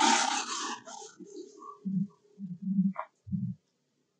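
A brief loud hissing rush, then a few short low grunts from an animal, with a single click among them.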